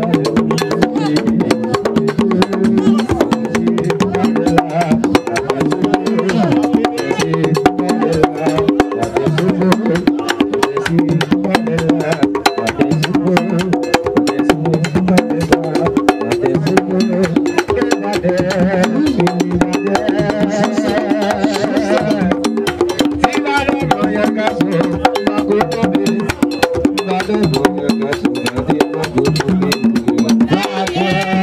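Haitian Vodou ceremonial music: drums and a fast, sharp clicking struck beat under group singing, carrying on steadily throughout.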